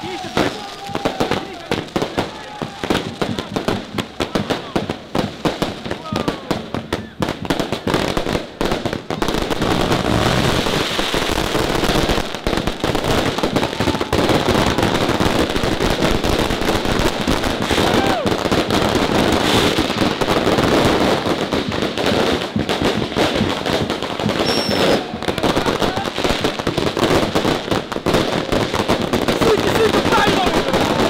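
Firecrackers and aerial fireworks going off: a run of separate sharp bangs for the first nine seconds or so, then a dense, unbroken crackle of rapid reports. A crowd is shouting.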